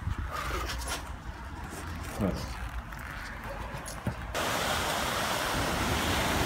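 Baltic Sea surf washing onto a sandy beach, a steady hiss of breaking waves that cuts in suddenly about four seconds in. Before it there is only a quieter low rumble.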